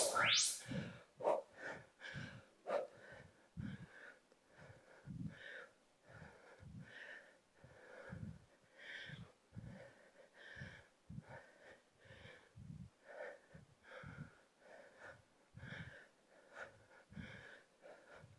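A woman breathing hard during repeated squats with an overhead reach: quiet, quick exhalations, about one or two a second.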